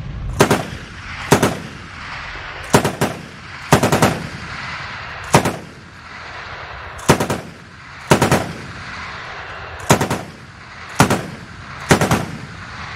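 Automatic gunfire in short bursts of two to four rapid shots, about ten bursts spaced roughly a second or so apart, each followed by a rolling echo.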